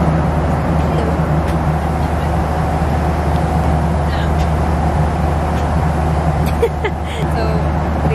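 Steady airliner cabin noise: a constant hum with a low drone from the engines and airflow, with faint voices near the end.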